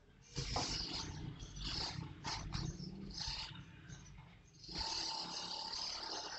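Wooden rolling pin rolling out naan dough on a marble counter, in a run of uneven strokes with a longer unbroken roll starting near the end.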